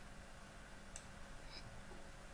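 Near silence: faint room tone, with a soft computer-mouse click about halfway through and a smaller tick shortly after.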